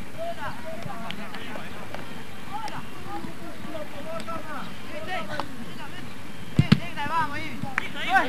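Distant shouts and calls from players and spectators on an outdoor football pitch, over a steady camcorder hiss. Two sharp knocks come in quick succession about six and a half seconds in.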